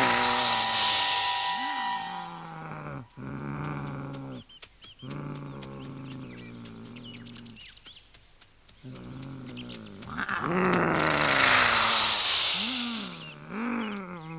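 Cartoon animals growling and snarling: a loud snarl at the start, lower wavering growls through the middle broken by short pauses, and another loud snarl from about ten seconds in.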